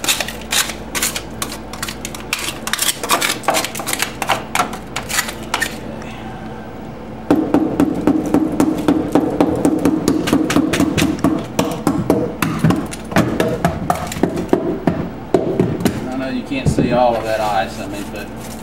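Ice being scraped and chipped off a freezer compartment floor with a plastic scraper, in rapid strokes, then from about seven seconds in a heavier run of repeated knocks from a dead blow hammer breaking up the ice over the blocked drain.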